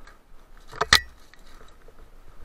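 Mountain bike rattling as it rides over rough dirt trail: a short, loud metallic clatter about a second in, with a brief ring, over a low hiss of rolling.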